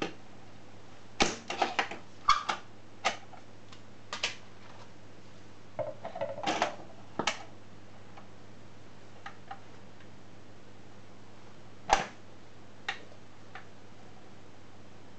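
Clicks and clunks from a Bush record player's autochanger deck and tonearm as a 12-inch record is loaded and the changer set going: a quick run of clicks in the first half, a single loud click about twelve seconds in, then a couple of faint ticks. A low steady hum runs underneath.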